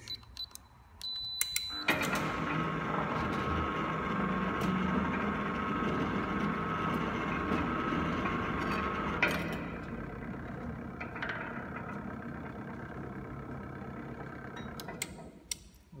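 A wireless gate keypad gives a short beep as a code is entered, then a sliding-gate opener's electric motor starts and runs with a steady whine. After a click about halfway it runs on more quietly and stops shortly before the end, with a few clicks.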